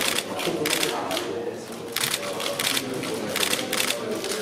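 Several camera shutters clicking rapidly in overlapping bursts. They thin out about a second in, then fire almost continuously from about two seconds in.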